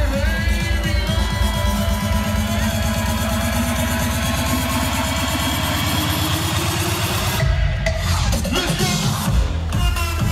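Big-room electro house dance music played loud over an outdoor sound system. It is a build-up: the drum hits come faster and faster under a rising sweep, the bass cuts out briefly about seven and a half seconds in, and heavy bass beats come back in with the drop near the end.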